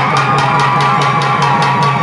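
Tamil devotional folk music: a double-headed barrel drum beaten in a steady beat of about four strokes a second, under a held melodic line.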